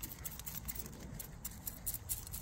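Metal tweezers picking and scraping through a succulent's root ball, with soil crumbling off the roots: a string of faint, quick little scratches and ticks.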